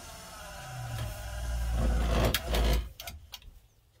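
DC motor of a DIY automatic chicken coop door winding the door upward. It runs steadily and grows louder as it lifts, then cuts off about three seconds in as the door reaches the top. The owner finds the motor a bit underpowered for the job.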